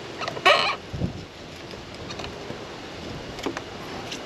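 A single short, loud bird-like call about half a second in, followed by a soft knock; otherwise a low, steady outdoor background.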